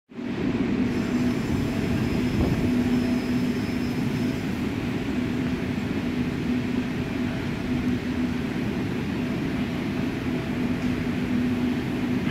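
Steady low rumble of a cooling hall's air handlers moving air, with a constant hum running under it.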